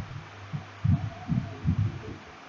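A steady low electrical hum with a run of about six soft, low thumps, starting about half a second in and coming in quick succession through the second half.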